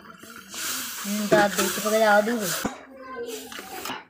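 Buffalo milk being poured from a steel bowl into a hot kadhai of fried masala, a hissing splash for about two seconds that stops with a sharp click. A voice is heard over it.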